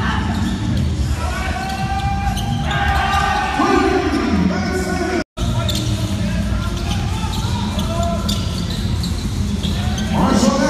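Basketball game sound: a ball bouncing on a hardwood court, with voices calling out and almost no crowd noise. The sound cuts out for an instant about five seconds in.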